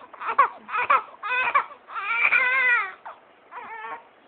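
Young infant crying: three short cries in quick succession, then a longer wail about two seconds in, and a brief last cry near the end.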